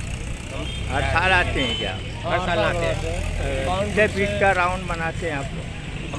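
A man speaking in Hindi from about a second in, over a steady low rumble of road traffic.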